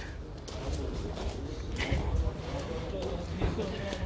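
Footsteps on gravel, with faint voices in the background.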